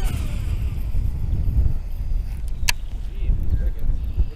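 Wind rumbling on the microphone while a Shimano Scorpion baitcasting reel is cast, its spool giving a faint falling whine in the first second. A single sharp click comes about two and a half seconds in.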